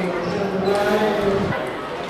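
A young player's drawn-out shout, held at a steady pitch and cut off about one and a half seconds in, over light bounces of a table tennis ball.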